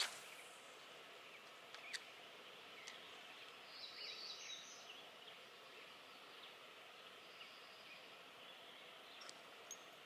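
Near-silent outdoor ambience with a faint steady background hiss, a short high bird chirp about four seconds in, and a sharp click at the very start.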